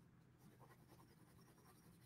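Very faint scratching of a pencil hatching shading onto sketchbook paper, otherwise near silence.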